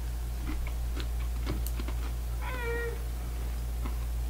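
A cat meowing once, briefly, about halfway through, over a steady low electrical hum and a few faint clicks.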